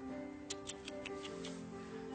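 Soft background music with a held, sustained chord, and a few light, clock-like ticks during the first second and a half.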